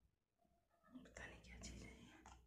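Near silence, then a faint whisper-like voice for about the last second.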